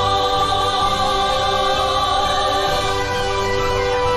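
Mixed choir of men's and women's voices singing in full voice, holding long, steady notes.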